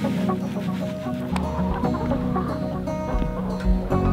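A flock of laying hens clucking around a feeder, with background music playing underneath.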